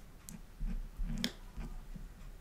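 Faint, scattered clicks and soft taps of metal tweezers and a plastic glue spatula handling a small glued leather welt strip, with the sharpest click a little past a second in.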